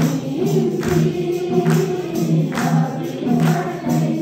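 A Nepali devotional bhajan sung by a woman over a microphone, with voices joining in as a group, over a steady beat about every 0.8 seconds.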